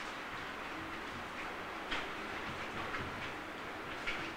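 Marker writing on a whiteboard: a run of faint scratchy strokes over steady room noise, with one sharper stroke about two seconds in.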